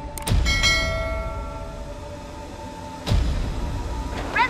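Subscribe-button sound effect: a click followed by a bell-like ding that rings and fades over about a second and a half. A second thump comes about three seconds in.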